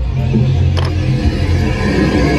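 Tour coach engine idling close by, a steady low hum, with electronic dance music playing underneath.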